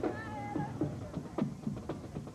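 A marching band's drums beating in a steady march rhythm, with a short wavering high-pitched tone near the start.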